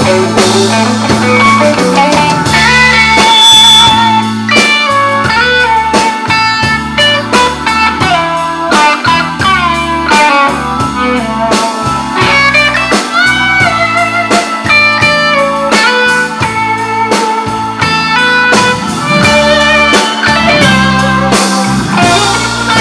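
Live band playing an instrumental break: a lead guitar solo with bent notes over drums and bass.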